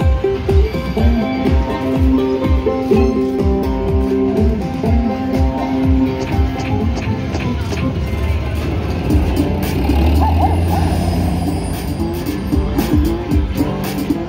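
Cash Crop video slot machine playing its bonus-round music and jingles through its speakers while the feature is chosen and the free spins start. A low drone comes in about ten seconds in.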